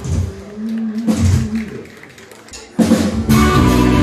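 Live band playing with electric guitar, bass and drums. The first part is a sparse passage of a few separate notes, and about three seconds in the full band comes in loud.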